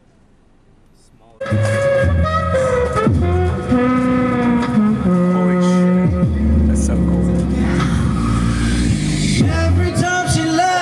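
A street band playing amplified music, with a bass line and held melodic notes; it starts abruptly about a second and a half in, after a faint quiet stretch.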